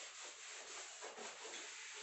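Whiteboard eraser rubbing across a whiteboard in quick repeated wiping strokes, a faint steady scrubbing as the writing is wiped off.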